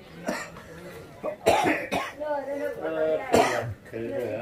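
An elderly man coughing several times, sharp harsh coughs, the loudest about one and a half seconds in and again near the end, with a few words spoken in between.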